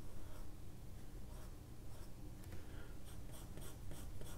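Pencil sketching on sketchbook paper: faint scratching strokes, coming more often in the second half.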